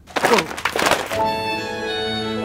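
A clatter of books falling and hitting the floor in the first second, followed by background music that comes in a little over a second in.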